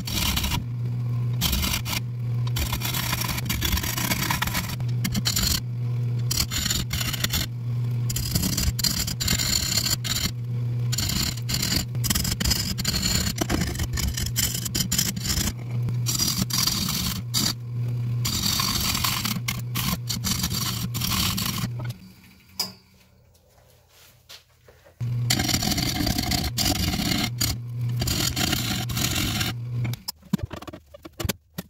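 Wood lathe motor humming steadily while a turning tool cuts a spinning acacia crotch bowl blank. The cutting noise is rough and keeps breaking off as the tool meets the still out-of-round blank. The sound drops to near silence for about three seconds near the end, then the hum and cutting resume.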